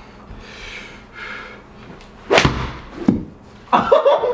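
Golf iron striking a ball hard in an indoor simulator bay: one loud, sharp impact about two and a half seconds in, with the ball hitting the simulator screen almost at once, followed about half a second later by a second, fainter click. A short exclamation comes near the end.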